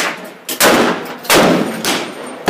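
Two semi-automatic shots from a Beretta Cx4 Storm pistol-calibre carbine, a little under a second apart, each with an echoing tail under the booth's roof.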